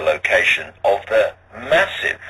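Speech: a man talking in short phrases, over a steady low hum.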